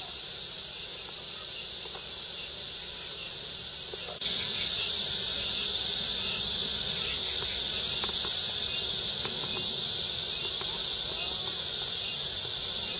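A steady, high-pitched chorus of summer insects, which jumps louder about four seconds in and then holds.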